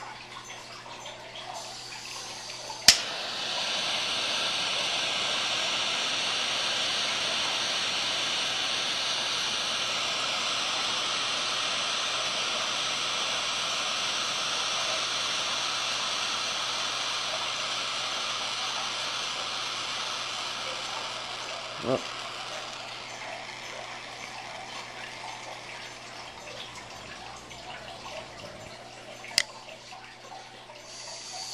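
Butane torch lighter clicking on, then its jet flame hissing steadily for about twenty seconds as it is held to a cigar's foot, tailing off. Another sharp click comes near the end.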